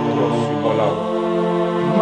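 Music with a voice singing in long, held notes, chant-like.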